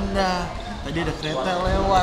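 A man speaking, with a couple of low thumps underneath, near the start and again near the end.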